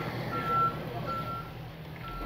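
Tow truck's reverse warning alarm beeping as the truck backs up, heard from inside the cab: two steady, single-pitched beeps a little under a second apart.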